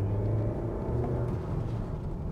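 Mahindra Scorpio-N's 2.0-litre turbo-petrol engine and road noise heard from inside the cabin while driving: a steady low hum.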